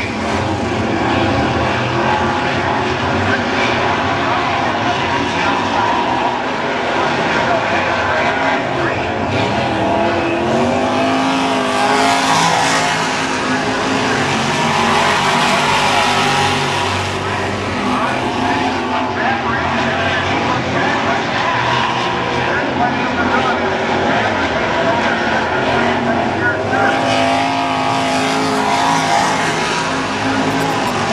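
A field of dirt modified race cars running at speed around the oval, their V8 engines loud and continuous, with engine notes rising and falling as cars pass and get on and off the throttle.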